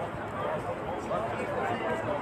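Crowd chatter: many people talking at once, with no single voice standing out, at a steady level.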